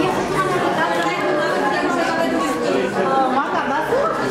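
Several people talking at once: overlapping conversational chatter with no single clear speaker.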